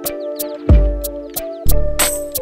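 Background music: held sustained notes over a deep drum beat, with light ticking percussion.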